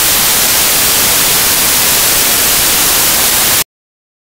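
Loud, steady hiss of static noise, spread evenly from low to high pitch, that cuts off abruptly to silence near the end.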